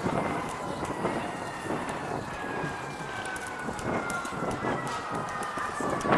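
An emergency vehicle siren holding a long tone that slides slowly down in pitch, over street noise.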